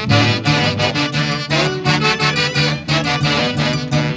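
Instrumental passage of Andean folk music played by a band: sustained melody instruments over a regular, even bass beat, with no singing.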